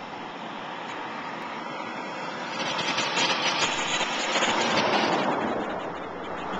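A motor vehicle passing close by on the road: its rushing noise swells from about two and a half seconds in and fades again over the next few seconds, over a steady rush of air and road noise from the moving bicycle.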